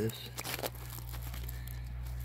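Faint crackling and rustling close to the microphone, a few small clicks in the first half-second, over a steady low hum.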